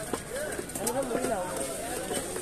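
Voices talking in the background, with a couple of light knocks of a cleaver cutting seer fish steaks on a wooden chopping block.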